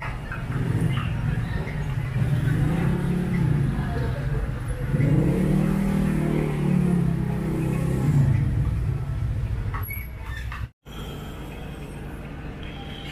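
A motor vehicle engine running close by, with a steady low hum; its pitch rises and then falls between about four and eight seconds in. The sound cuts out briefly near the end.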